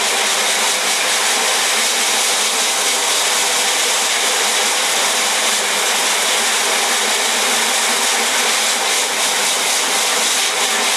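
Steady hiss of water jetting from a pistol-grip hose spray nozzle onto the mesh of a screen-printing screen, washing the unexposed emulsion out of the stencil after exposure.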